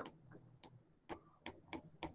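Faint, irregular ticks of a stylus tapping on a tablet's glass screen during handwriting, about five light clicks.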